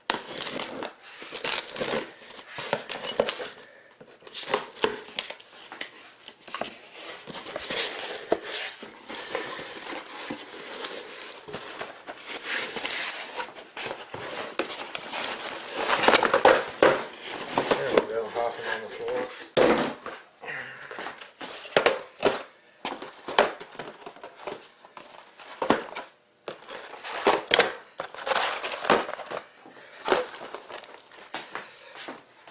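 A sealed cardboard shipping case being slit open along its taped seam with a blade and unpacked: cardboard scraping, rustling and tearing, with irregular knocks as the boxes of trading cards are lifted out and set down.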